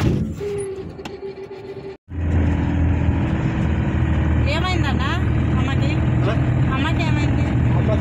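Steady engine and road drone of a passenger van heard from inside the rear compartment while it drives, starting abruptly about two seconds in, with people talking over it.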